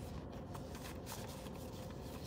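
Soft, irregular rustling and handling noises, several short scuffs, over a steady low hum inside a parked car.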